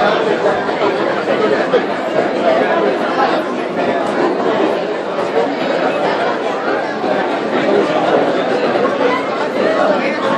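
Indistinct chatter of many people talking at once in a crowded indoor hall, a steady babble of overlapping voices.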